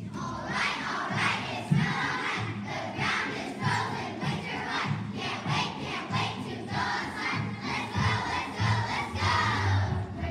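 A large group of young children singing together, many voices in a rhythmic group chant, with music underneath.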